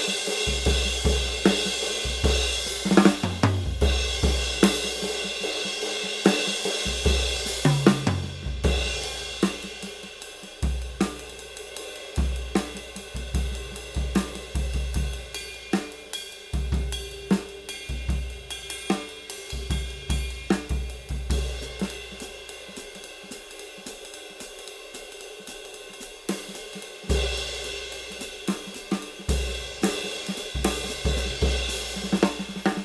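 Drum kit groove built around a 19-inch Istanbul Agop Traditional Dark crash cymbal, played with wood-tip sticks, with snare and bass drum beneath its wash. The playing drops to a softer dynamic about ten seconds in and swells back up near the end.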